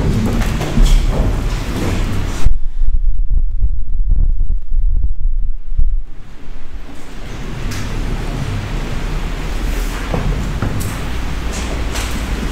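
Microphone handling noise: a loud low rumble with thumps as the microphone is picked up and adjusted, the higher sounds dropping out for a few seconds in the middle.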